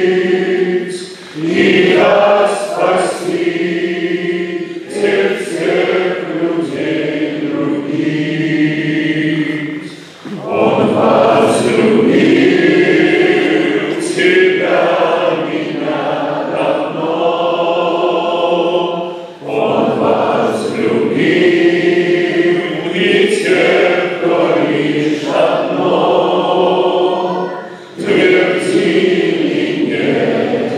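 A group of voices singing together, led by men, in long sustained phrases with three brief breaks between them.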